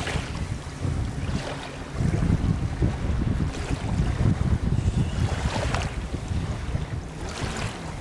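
Wind rumbling on the microphone over shallow saltwater lapping and sloshing, with a few soft splashy swishes of water.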